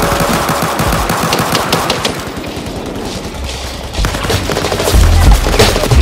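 Automatic gunfire sound effect: a rapid string of shots that fades away over about three seconds. A bass-heavy beat then comes in about four seconds in and grows louder.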